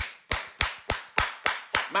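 A man clapping his hands in a steady rhythm, about three sharp claps a second.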